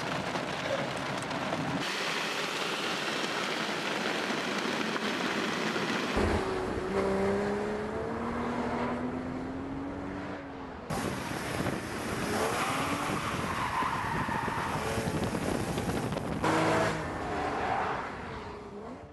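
2013 Porsche Boxster S's 3.4-litre flat-six running through a cone course, its pitch rising as it accelerates, with tyres squealing in the turns. The first several seconds are a steady hiss before the engine comes in.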